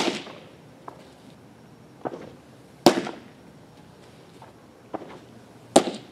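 Baseballs popping into a catcher's mitt, three sharp catches about three seconds apart, each with a softer knock just under a second before it.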